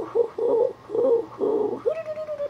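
A man's voice doing a puppet character's wordless laugh: about five short, pitched vocal bursts in a low hooting tone.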